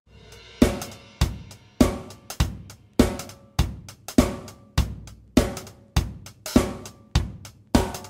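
A drum kit playing on its own after the full band cuts out abruptly at the start. It keeps a steady groove of kick, snare and cymbals, with a strong hit a little under twice a second and lighter strokes in between.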